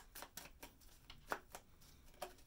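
Faint handling of tarot cards on a table: a few soft clicks and flicks of card stock, the sharpest about a second and a third in.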